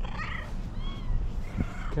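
Fluffy tabby cat meowing: a short call that bends up and down just after the start, then a brief, higher chirp-like call about a second in.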